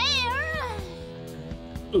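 A high, wavering cartoon character's voice calls out 'there's water' ('有水') over soft background music, and the voice trails off about a second in.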